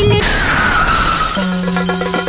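Film soundtrack music with a sudden noisy hit about a quarter second in. The hit carries a falling tone and dies away over about a second, then a held low note sounds with the music.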